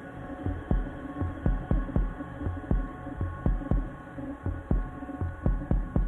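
A band playing live: a low pulsing thud repeating about three times a second over sustained droning tones.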